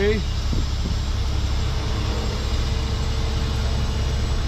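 Heavy tow truck's diesel engine running steadily while its winch drags a sunken pickup up out of the river, with a faint steady whine joining about one and a half seconds in.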